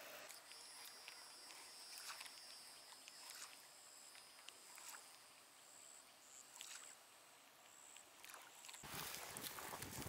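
Near silence, with faint high-pitched steady tones and a few soft ticks. A louder rushing noise comes up near the end.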